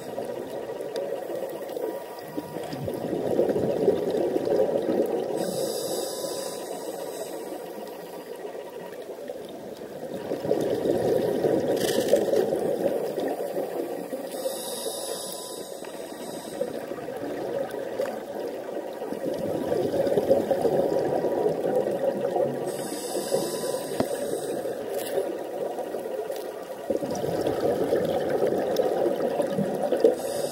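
Scuba regulator breathing heard underwater: a bubbling rush of exhaled air swells and fades about every eight to nine seconds, each swell ending with a short high hiss.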